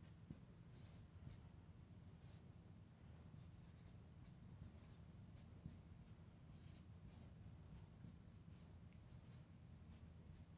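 Faint marker pen writing on a whiteboard: short, irregular strokes as symbols are written out.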